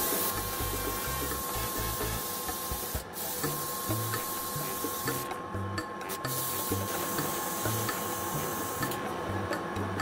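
Airbrush spraying thinned hologram glitter paint: a steady hiss of air that breaks off briefly about three seconds in, pauses again around the middle, and stops about a second before the end.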